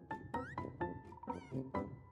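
Light background music on the end card: quick, evenly struck plucked notes over held tones, with two short squeaky sliding sound effects about half a second and a second and a half in.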